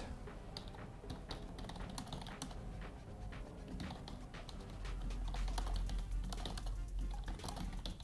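Typing on a computer keyboard: a steady run of key clicks as a line of text is typed.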